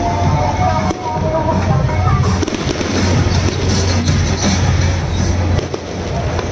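Firecrackers crackling continuously, dense and loud, over music from the floats' loudspeakers and a steady low hum; a melody is clearest in the first couple of seconds.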